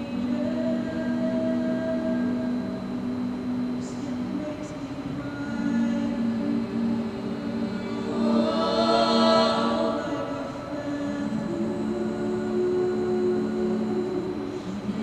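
All-female a cappella group singing held, sustained chords, swelling to a loud high peak about eight to ten seconds in and then settling back.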